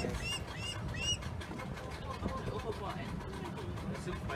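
A bird calling a quick run of short whistled notes, each rising and falling, in the first second, over a steady low rumble.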